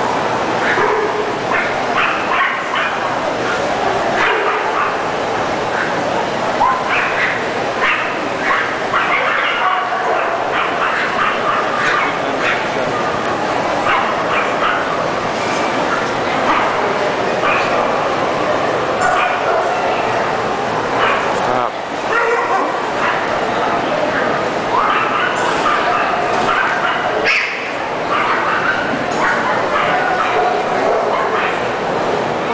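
Dogs barking and yipping over and over, many short barks overlapping, over the steady chatter of a crowd.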